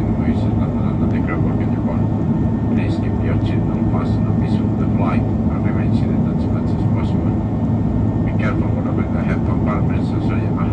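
Steady low rumble of an Airbus A330's engines and rushing air, heard from inside the passenger cabin in flight, with faint voices from elsewhere in the cabin.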